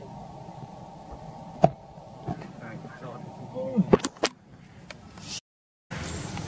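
People talking in the background, with a few sharp clicks and a short pitched call about four seconds in. The sound cuts out completely for about half a second just before the end.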